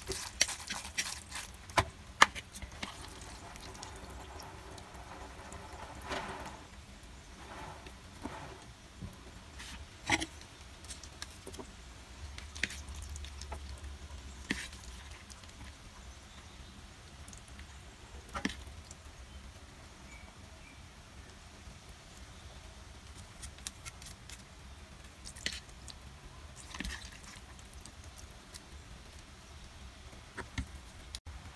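Scattered light clicks and taps of a fork and chopsticks against a bowl and a plastic noodle rack, with soft wet squishes of cooked noodles being stirred and lifted. The taps come in a quick cluster at the start, then one every few seconds, over a low steady hum.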